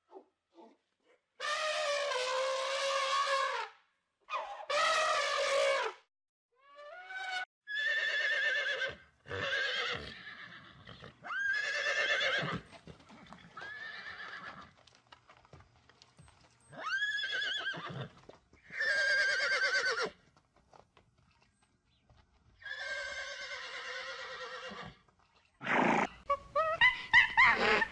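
Horses neighing and whinnying, about a dozen separate calls with short pauses between them. Several calls start high and fall away in pitch.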